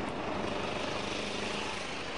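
Motorcycle engine running steadily as the bike rides along the road, with a low, even drone.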